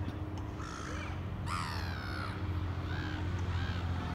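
Gulls calling over a canal: several calls, the longest and loudest about a second and a half in, over a steady low hum.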